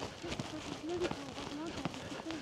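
Footsteps of people jogging on a tarmac lane, irregular light footfalls, with a faint voice behind them.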